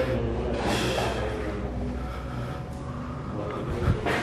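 A breathy, snort-like exhale close to the microphone, about a second in, which the listener takes for a companion's breathing.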